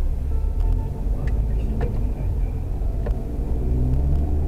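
Steady low rumble of a car's engine and tyres heard from inside the cabin as it moves slowly in traffic, with a few faint clicks.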